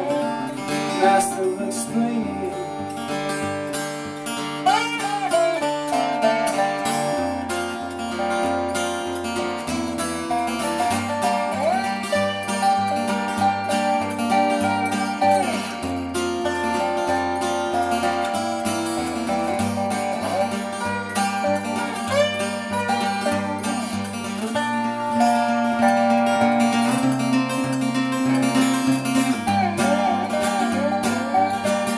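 Acoustic guitar and lap steel guitar playing an instrumental passage together. The lap steel slides up and down into its notes over a steady picked pattern on the acoustic guitar.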